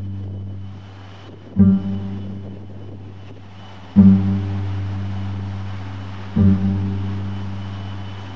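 Background music: a low bass note struck about every two and a half seconds, each one ringing out and fading before the next.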